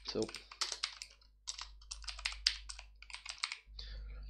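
Computer keyboard typing: quick runs of key clicks in short bursts with brief pauses between them.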